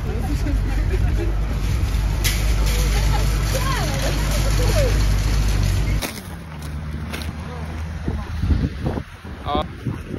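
A loud, steady low rumble of a nearby idling vehicle and street traffic, with faint voices over it, which cuts off suddenly about six seconds in. Then quieter street sound with footsteps on snow, a few sharp knocks near the end.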